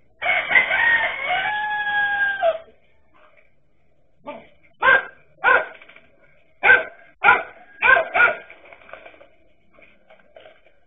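A rooster crows once near the start, a long call that rises and then holds steady. A couple of seconds later comes a run of about six short, sharp dog barks.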